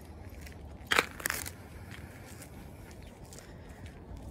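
A brief crackling crunch about a second in, over a faint steady background hiss.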